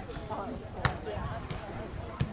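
A soccer ball being kicked: a single sharp thud about a second in, over background voices.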